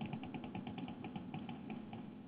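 A faint, fast run of small, evenly spaced clicks, roughly ten a second, typical of computer input such as a mouse scroll wheel or keys.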